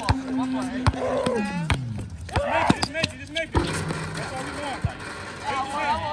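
A basketball bouncing on an outdoor concrete court in a pickup game, sharp irregular thuds of the ball and players' feet, with players' voices calling out. A steady droning tone under them slides down in pitch about a second and a half in.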